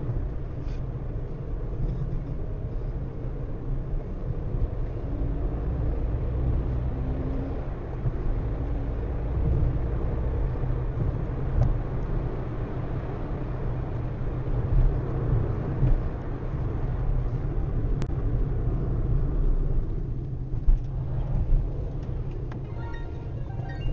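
Steady low road and engine rumble of a moving car, heard from inside the cabin through a dashcam microphone.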